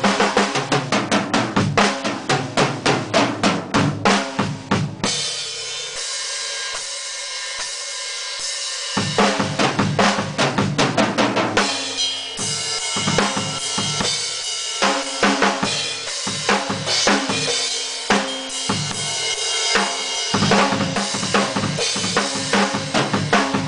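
Mapex drum kit played in a fast improvised pattern of rapid kick, snare and tom strikes with Paiste cymbals. About five seconds in, the drums drop out and cymbals ring alone for about four seconds, then the strikes resume in a looser, varied groove.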